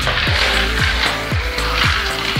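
Background music with a steady beat of deep falling kick-drum thumps, about two a second, under a dense hissing layer.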